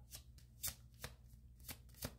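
A deck of tarot cards being shuffled by hand, the cards slapping together in several short, soft clicks spread irregularly through the moment.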